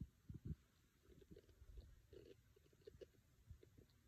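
Near silence, with a few faint low knocks in the first half-second and scattered faint ticks: handling noise from a hand touching a tablet in its rubber case.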